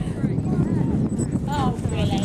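Pony's hooves on grass as it goes past close by, with people talking in the background.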